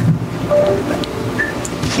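Low rumbling noise on a handheld microphone, with a few faint, indistinct voices in the room.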